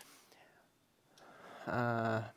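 A short pause in a man's speech: about a second of near silence, then a soft breath and a drawn-out voiced syllable as he starts speaking again near the end.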